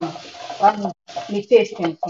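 Chopped onions and carrots sizzling in a wok as they are stirred with a spatula; the hiss is strongest in about the first second, with a voice talking over it.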